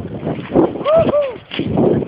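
Wind buffeting and handling knocks on a moving handheld camera's microphone, with a short rising-and-falling shouted call about a second in.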